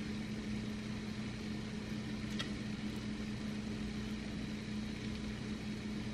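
Steady low hum with a faint even hiss under it, and a couple of faint light clicks in the middle.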